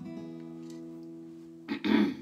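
Acoustic guitar chord left ringing and slowly fading, with a short louder sound near the end.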